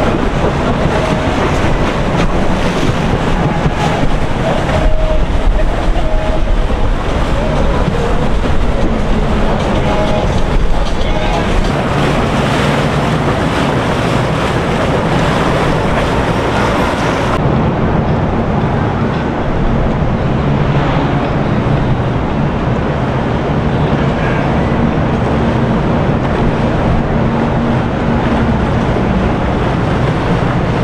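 Boat engines running, mixed with water noise and faint voices. About halfway through, the sound cuts abruptly to a duller, steadier engine drone.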